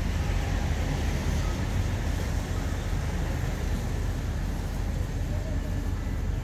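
Steady low rumble of a diesel-hauled passenger train idling while it stands at the platform.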